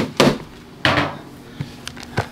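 Two sharp clattering knocks of hard plastic, about a quarter second and a second in, as a black plastic egg grid is lifted out of a hatchling tub and set down, followed by a faint click near the end.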